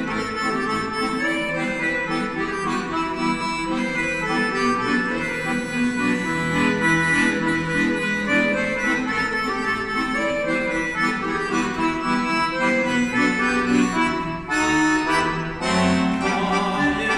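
Weltmeister piano accordion playing an instrumental melody over sustained chords, dropping out briefly twice near the end.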